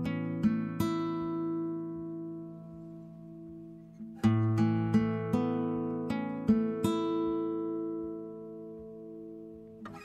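Background music: an acoustic guitar plucking short groups of notes that ring out and slowly fade, with a new phrase starting about four seconds in.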